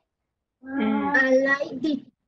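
A child's voice over an online call, holding long drawn-out vowels at a fairly steady pitch, coming in about half a second after dead silence.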